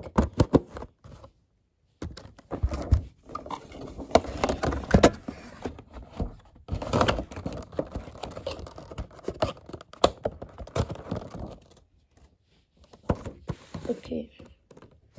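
Hands handling a scale model plane's packaging, a clear plastic case and a cardboard box, making a dense run of clicks, taps and scraping rustles. It starts after a short pause about two seconds in and dies away shortly before the end.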